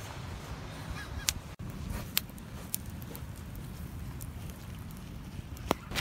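Driftwood campfire crackling, with a few sharp pops scattered over a steady low rumble of wind and surf. A faint call is heard about a second in.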